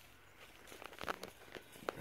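A few faint footsteps on dry leaf litter and twigs, with short rustles and clicks about a second in and again near the end.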